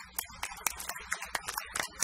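Audience applauding with scattered, irregular hand claps.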